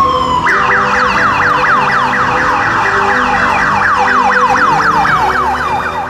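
Siren: a slow falling wail that switches about half a second in to a rapid yelp, about four or five falling sweeps a second.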